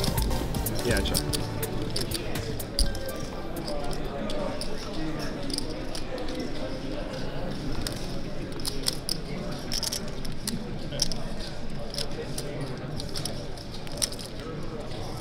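Poker room ambience: a steady murmur of many voices with frequent short, sharp clicks of poker chips being handled and stacked at the table. Background music stops right at the start.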